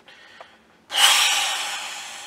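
A man's heavy breath out, a hiss that starts about a second in and fades away steadily over about a second and a half.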